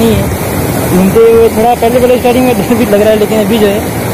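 Loud, steady rush of sea surf breaking on a beach, with a man's voice speaking over it from about a second in.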